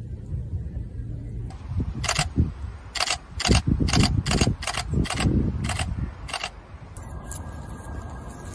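DSLR camera shutter firing repeatedly: about ten sharp clicks at uneven intervals, starting about two seconds in and stopping shortly before the end.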